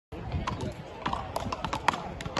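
Wooden beach paddles (palas) hitting balls in several games at once: a quick, irregular run of sharp knocks, eight or nine in two seconds, sometimes overlapping, with the loudest near the end.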